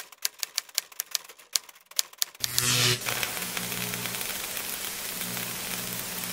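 A rapid run of typewriter key clicks, several a second, for about two and a half seconds. Then a short loud burst of hiss gives way to steady static-like noise with a low hum under it.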